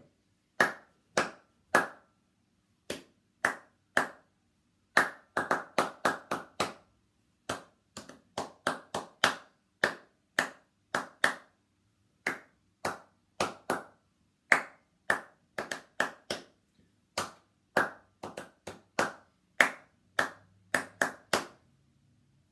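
One person's bare hands clapping short rhythm patterns, a few claps to each group with brief pauses between groups. These are call-and-response clapping rhythms for listeners to echo, ending on the one rhythm they are not to clap back.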